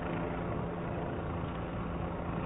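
Steady outdoor background rumble with a low, even engine-like hum, typical of nearby idling vehicles and traffic.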